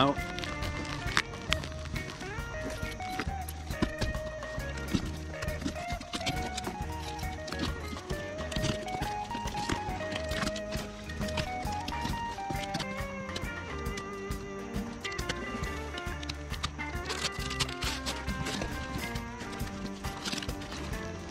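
Background music with a steady bass line and a stepping melody.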